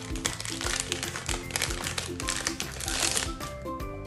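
Background music with a repeating melody plays over the crinkling of plastic wrapping being pulled off a small boxed magnetic puzzle game, with louder rustles about a second and a half in and near three seconds.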